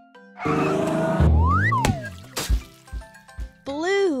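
Cartoon sound effects for a ball sent into a paint can: a loud burst of noise, a whistle that rises then falls, two sharp hits as the can is knocked over and the paint splashes, then a short tone that bends up and down near the end, over light plucked music.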